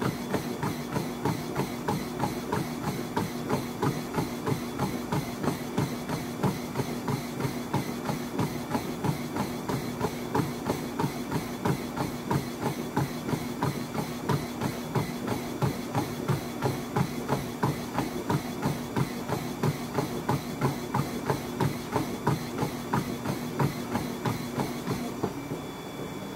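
Running footfalls on a motorised treadmill belt at a sprint, rapid and even, over the treadmill's steady motor hum. Near the end the hum stops and the footfalls fade as the sprint ends.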